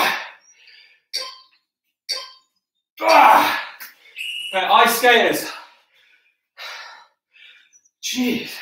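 A man breathing hard from exertion at the end of a set of narrow press-ups: short, sharp exhalations about once a second. About three seconds in comes a loud gasp, then a drawn-out groan as he gets up off the floor. A few quieter panting breaths follow.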